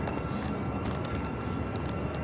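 Steady low rumble of downtown street noise, with a faint steady high tone that fades out past the middle.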